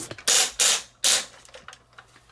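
Hard plastic parts of a Studio Cell Unicron transforming robot figure scraping and shifting as it is handled and its legs are swung out to the sides: three short scrapes within the first second or so, then a few faint clicks.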